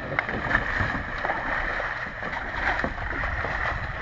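Paddles splashing and water sloshing around small round plastic Corcl boats as several people paddle them, in scattered irregular strokes over a steady hiss.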